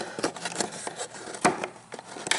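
Small irregular clicks and taps of hard plastic as fingers pry at a golf cart's charging-port cover to unclip it, with one sharper click about one and a half seconds in.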